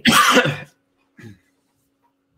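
A man's short, breathy laugh of a few quick pulses.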